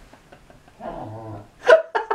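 A man's low, growling vocal sound just before the middle, then loud laughter starting near the end, breaking into quick, regular ha-ha pulses.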